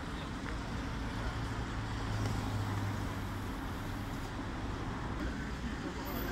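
Steady street traffic noise with a low motor hum that swells for a couple of seconds about two seconds in.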